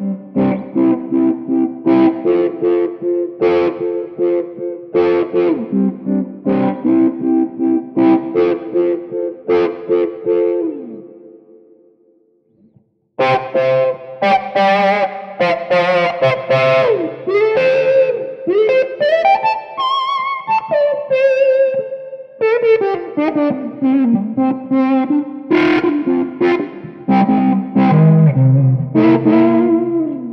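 Electric guitar on the neck pickup played through a Qtron-style envelope filter (auto-wah) on a Fractal FM3, after a Klon-style overdrive, the filter sweeping open as the strings are struck harder. Chord and note phrases for about eleven seconds, a brief pause, then a lead line with slides and bends that climbs high and comes back down.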